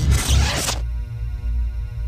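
Logo sting: a swishing whoosh effect that cuts off sharply under a second in, over a deep bass. It gives way to a held musical chord.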